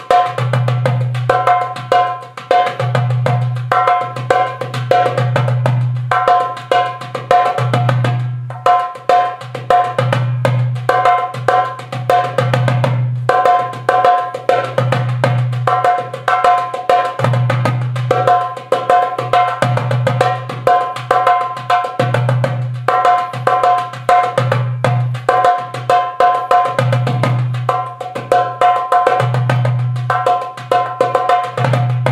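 Hand percussion played in a steady, fast rhythm over a music track: a dense run of sharp hits above a recurring pitched note and a low pulsing bass.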